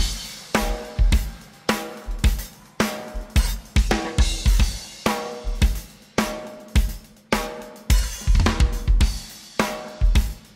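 Drum kit played live: bass drum, snare, toms, hi-hat and cymbals struck in a fast, steady rhythmic pattern, with deep kick thumps and the drums ringing briefly after the hits.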